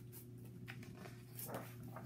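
Pages of a picture book being turned and handled: faint paper rustles and swishes, a few short ones with the loudest about one and a half seconds in.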